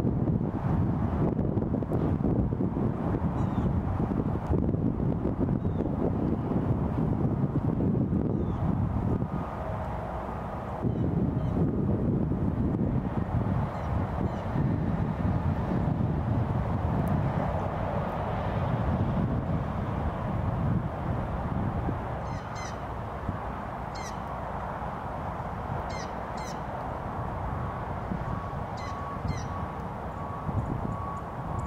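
Steady low outdoor rumble, with short, faint, high animal calls repeating in the second half.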